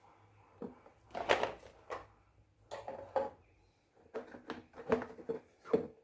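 Plastic salad spinner being handled: its lid and inner basket knock and clatter in a string of short, irregular bangs as it is opened and the basket of washed lettuce is lifted out of the bowl.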